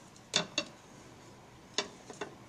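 Hands working yarn at a wooden frame loom: a few light, sharp clicks, one about a third of a second in, a fainter one just after, and another near the end, over faint room hiss.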